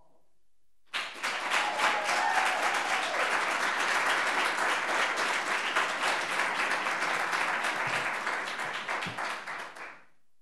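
Audience applause, breaking out about a second in, holding steady, and dying away near the end.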